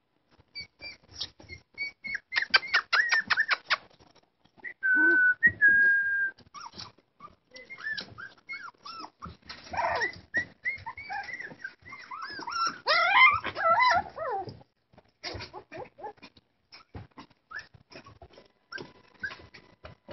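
A litter of young puppies whining and yelping. First comes a quick run of short high yips, then a long, steady, high-pitched whine, then several pups whimpering and squealing over one another.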